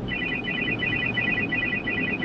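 Electronic laser alert from an in-car speaker: a rapid, warbling run of short high beeps in several pitches, repeating several times a second. It plays over steady road noise inside the moving car's cabin.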